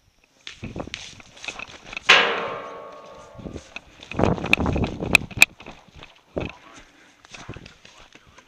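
A loud sharp hit about two seconds in that rings on for about a second, then a second of scuffling noise with three sharp cracks in quick succession around the five-second mark, among scattered knocks: paintball play, markers firing and gear and feet moving.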